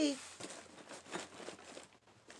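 Packaging being handled and opened by hand: scattered short crinkles and crackles of the parcel's wrapping.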